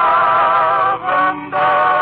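Male vocal quartet singing long held notes with vibrato over a dance orchestra, with a short note about a second in between two sustained chords, in the thin, muffled sound of an old radio broadcast recording.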